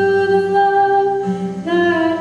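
A voice holding a long sung note without words over a strummed acoustic guitar, moving to a new note about one and a half seconds in.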